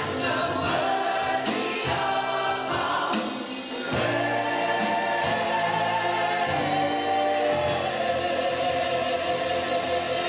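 Gospel worship team singing in harmony through microphones, several voices with a low sustained part underneath. Near the end they settle into a long held chord.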